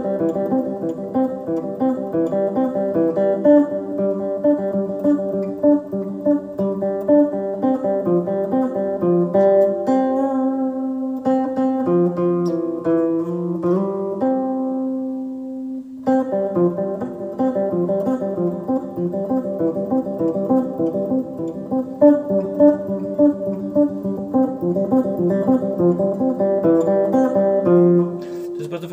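Clean electric guitar with reverb playing a fast, repeating picked pattern on the G and D strings, fretted notes alternating with the open strings, played loud and quick as a dynamics and tempo exercise. About ten seconds in it slows to a few ringing notes, one held note cuts off sharply about sixteen seconds in, and then the fast pattern resumes.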